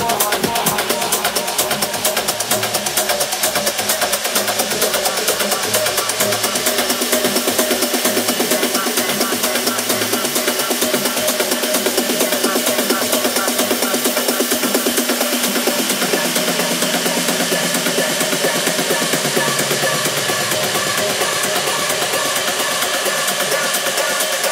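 House music mixed live by DJs, a fast steady beat at club level. About two-thirds of the way through the bass drops out, leaving the beat and upper parts running on.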